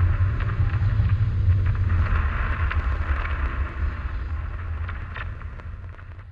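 Closing sound effect: a deep rumble under a hissing, crackling noise that swells up, then slowly fades away.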